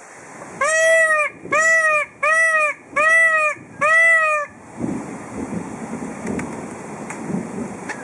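Indian peafowl (peacock) giving five loud calls in quick succession, each about half a second long and arching up and then down in pitch.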